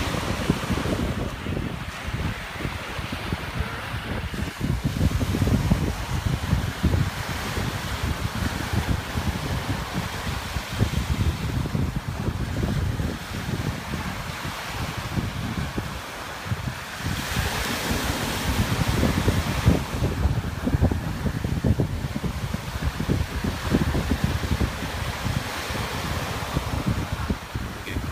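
Wind buffeting the microphone in uneven gusts, over a steady wash of small waves breaking at the shore.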